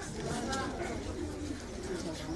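Birds calling in the background, with faint voices of people standing around.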